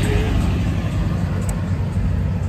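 Loud, steady low rumble of street noise beside a road, a mix of traffic and wind on the phone's microphone, with no clear single event.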